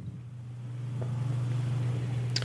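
A low, steady hum that grows slightly louder, over a faint hiss.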